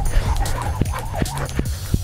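Background music with a steady beat, over a jump rope slapping the pavement about three times a second and a man panting hard between skips.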